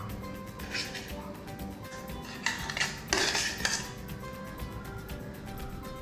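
A spoon scraping and knocking inside a stainless-steel blender jar as pulp is spooned out, with the clearest strokes from about two and a half to four seconds in, over background music.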